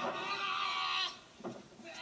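A drawn-out vocal cry, one held pitched sound lasting about a second that breaks off about a second in.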